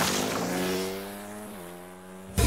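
Dirt bike engine running as the bike pulls away, fading steadily into the distance, its pitch dipping slightly near the end.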